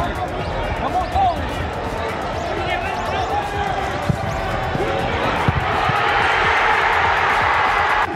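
Football match sound from the pitch: the dull thuds of the ball being kicked, a few seconds in, mixed with men's voices. A wash of noise swells over the last couple of seconds.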